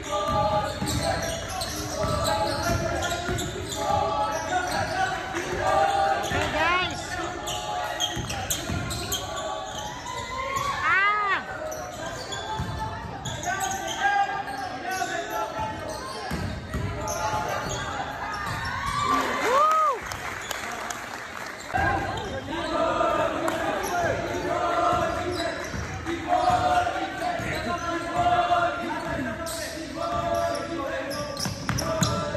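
Basketball being dribbled on a hardwood gym floor during a game, with repeated bounces and footfalls. Sneakers squeak a few times, and voices of players and spectators echo in the hall.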